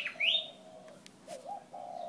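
Birds calling: two quick rising chirps at the start, then a low, steady cooing call that wavers briefly past the middle.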